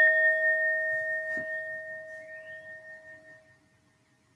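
Meditation bell, struck once to close a meditation, ringing out with a slow wavering and dying away about three and a half seconds in.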